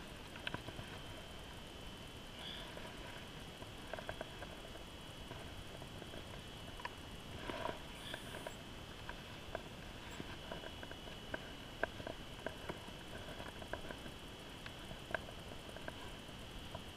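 Scattered small clicks, taps and rustles of hands handling a landed lake trout and working the hooks out of its mouth, over a faint steady high whine.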